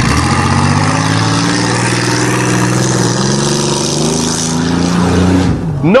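Chevrolet Cavalier engine running under load as the car drives across rough ground, its pitch climbing gradually. The engine is running again after its seized, water-contaminated bottom end had two spun rod bearings replaced.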